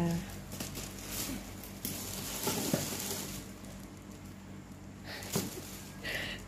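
Black plastic bag rustling and crinkling as it is pulled open and dogs push their noses into it, with the most rustling in the middle.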